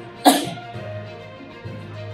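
A man coughs once, sharply and briefly, close to a podium microphone about a quarter of a second in. Faint background music follows.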